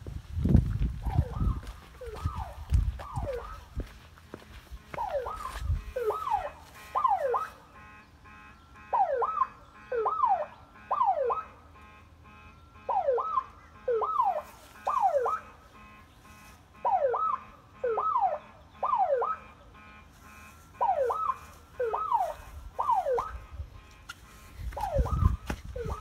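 Car alarm sounding: short, falling whoops in groups of three, a group about every four seconds, loud and very regular.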